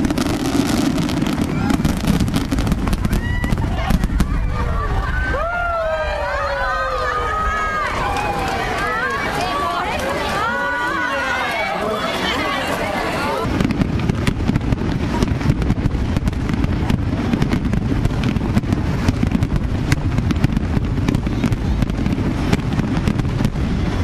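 Fireworks display going off: dense, continuous crackling and popping of fountain and rapid-fire fireworks. Spectators' voices ride over it in the middle. A little past halfway the sound turns suddenly heavier, with a low rumble under the crackle.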